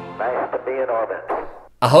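Speech: a voice speaks briefly as the intro music fades out. Near the end a man begins a greeting.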